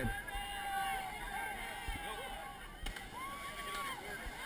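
Distant voices of a crowd, with a few drawn-out shouts and calls, one rising and falling near the end, and a single sharp click about three seconds in.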